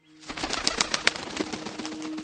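Bird wings flapping in an irregular patter of sharp clicks, starting suddenly after silence, over a faint low steady drone.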